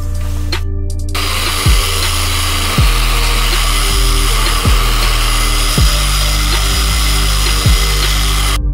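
A random orbital (DA) sander with 600-grit paper runs against an aluminium trailer panel, a steady hiss that starts about a second in, under hip-hop backing music with a deep bass beat that drops in pitch on each hit.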